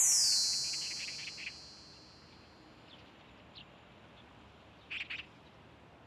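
A high, falling shimmer fades out over the first second, then sparse bird chirps over a faint background, the loudest pair about five seconds in.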